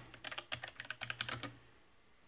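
Typing on a computer keyboard: a quick run of keystrokes for about a second and a half, then it stops.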